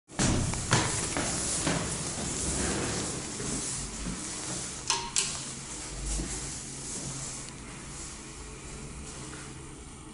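Footsteps and handheld-camera handling noise on the entrance steps of a building lobby, over a hiss that fades over the first half. Two sharp clicks about five seconds in.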